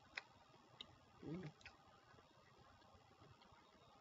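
Near silence: a few faint mouth clicks from chewing a soft protein bar, with a short closed-mouth "mm" just over a second in.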